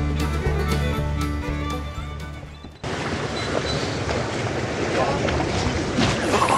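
Background music fades and cuts off about halfway through. A sudden switch follows to the steady noise of a boat under way: the towboat's outboard motors running, with wind on the microphone and rushing water.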